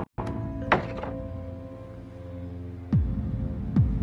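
Tense background music of held notes, cut through by three deep hits that drop sharply in pitch: one under a second in, one at about three seconds and one near the end.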